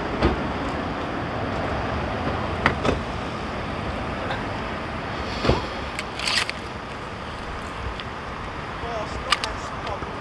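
Steady road traffic noise with a few short clicks and knocks.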